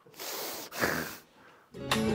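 A man's breathy laughter: two short noisy exhales. Music starts near the end.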